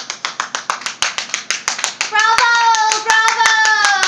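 Rapid hand clapping, about six or seven claps a second, as applause once the dance music stops. About halfway in, a high voice joins with one long cheer that falls in pitch near the end.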